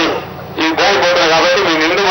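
A man making a speech in Telugu into a handheld microphone, starting again about half a second in after a short pause.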